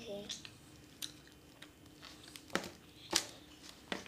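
A few sharp clicks and light rustles as sticks of chewing gum in their wrappers are handled and set down on a table.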